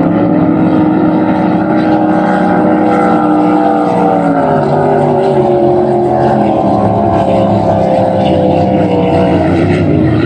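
Grand Prix racing hydroplanes' engines running hard at high revs. Their pitch holds, then sinks slowly from about halfway through, then drops sharply near the end.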